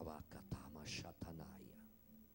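Soft speech for about the first second, then quiet background music with held notes as the voice stops.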